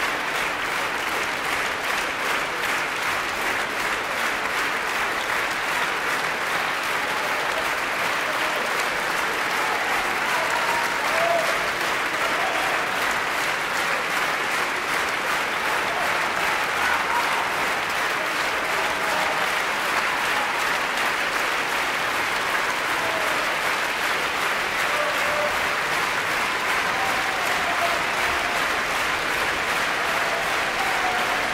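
Large audience applauding steadily, a dense, even clapping that keeps going without a break.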